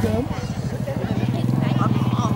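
A small engine running steadily at idle, a fast even low pulsing, with people talking over it.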